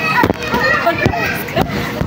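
Children's voices calling and chattering at play, with a few short, dull thumps spread through it.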